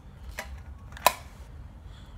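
A small printed metal gift tin of lip balms being handled, giving a faint click and then a sharp, louder click about a second in, as the tin is shut.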